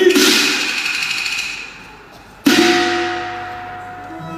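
Two loud struck-metal crashes, cymbal-like: one at the start and one about two and a half seconds in. Each rings out and fades over a second or two.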